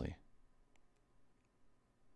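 A man's voice trails off at the very start, then a near-silent pause in a small room with a few faint, short clicks.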